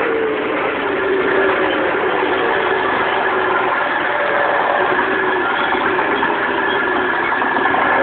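An engine running steadily, a dense even drone with faint held tones in it.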